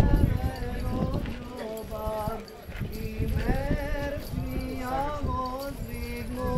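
Several voices chanting an Orthodox hymn in drawn-out sung lines with held notes, over a run of low knocks and thumps that are loudest at the start.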